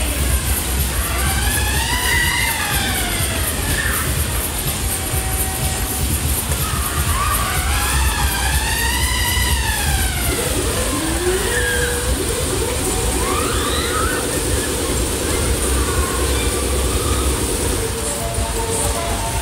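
Siren-like wail from a Himalaya fairground ride's loudspeakers, rising and falling twice over a steady low rumble, then giving way to a held tone for the rest of the time.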